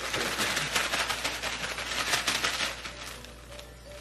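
Plastic bag crinkling and rustling rapidly as a chicken leg is shaken inside it in its coating mix; the shaking thins out near the end.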